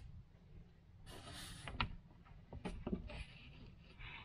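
Faint handling noise from the camera moving against the door: a soft rustle about a second in, then a few light clicks and taps.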